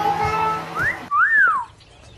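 A two-note wolf whistle: a short rising note, then a longer one that rises and falls, ending about three-quarters of the way through. Background music underneath cuts off just before the second note.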